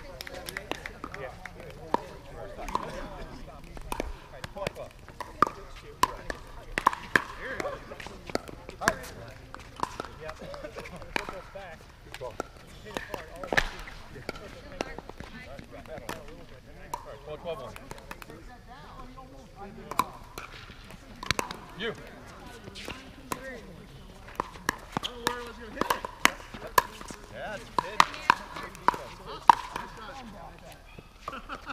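Irregular sharp pops of pickleball paddles hitting a plastic ball, coming in clusters, with a denser run near the end.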